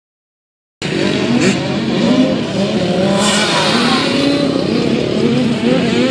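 Small 50cc two-stroke motocross bike engines revving up and down on the track, their pitch wavering as the throttle opens and closes. The sound starts about a second in.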